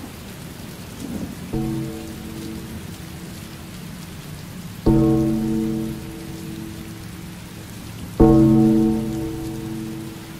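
Steady rain falling, with a low ringing tone struck three times, about every three and a half seconds, each fading away; the later two strikes are louder.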